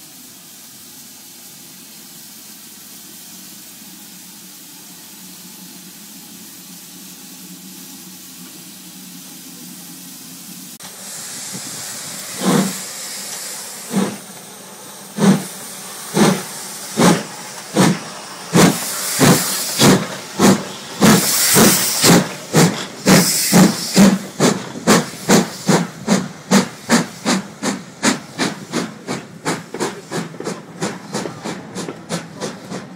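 LMS Stanier 'Mogul' 2-6-0 steam locomotive No. 42968 starting away with a train: steam hissing, then exhaust chuffs that begin about one every second and a half and quicken to about three a second as it gathers speed. For the first third there is only a quiet, steady low hum.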